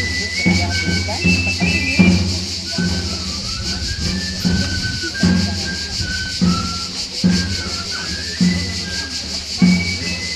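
Provençal galoubet, the three-hole pipe, playing a high single-line dance tune in held notes over a steady beat on the tambourin, the long side drum played with a stick.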